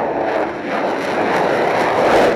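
Sukhoi Su-35 fighter's twin jet engines at takeoff thrust as the jet lifts off the runway: a loud, steady rush of jet noise, swelling slightly near the end.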